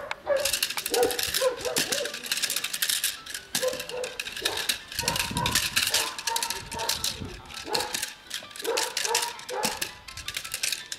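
Protection-dog bite work: a dog grips a helper's jute leg bite sleeve while the helper threatens it with a stick. There is a dense run of sharp clacks and rattling, broken by several short shouted calls.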